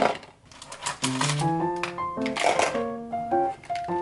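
Gentle background music with a melody of short notes, over the clicking and rattling of plastic pens being handled and sorted into acrylic holders, with a clatter of pens about two and a half seconds in.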